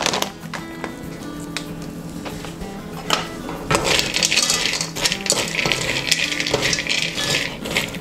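Background music with steady held notes; from about four seconds in, a metal spoon stirs roasted peanuts in a steel wok, a dry rattling scrape of nuts tumbling against the metal.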